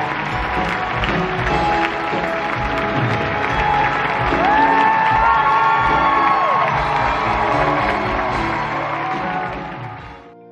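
Theatre audience cheering and applauding over music at a curtain call. About halfway through, one long whoop rises out of the crowd, holds and falls away. It all fades near the end.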